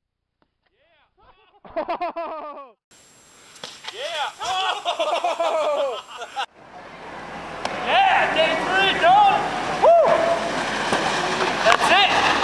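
People laughing and calling out over a steady background hiss, after a second or so of near silence at the start.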